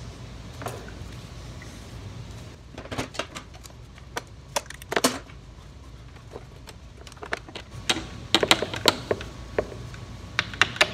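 Irregular light clicks, taps and clatters of a metal E46 M3 fuel filter and pressure regulator assembly being handled and offered up against the car's underbody, coming in short bursts with a busier cluster near the end.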